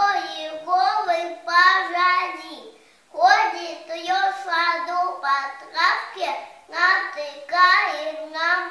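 A little girl reciting a poem aloud in a high voice, phrase by phrase, with a short pause about three seconds in.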